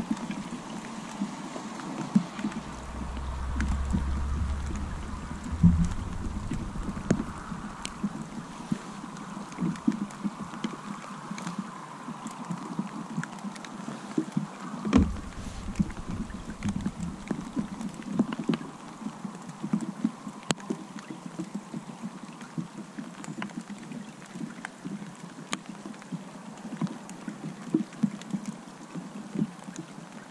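Steady rain falling on the river and on a waterproof jacket hood, with a low buffet of wind on the microphone a few seconds in. Scattered light clicks and a couple of louder knocks come from handling fishing tackle.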